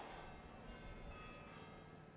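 Near silence: a faint, steady background hum.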